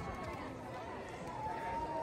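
Spectators' voices calling out and cheering as a field of runners goes by on a cobbled street, with the runners' footsteps underneath. Near the end there is one long held call.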